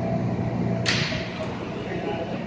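An R160A subway car standing in the station with its doors open, letting out a sudden sharp hiss of released air a little under a second in that fades over about half a second, as the train's steady low hum drops away.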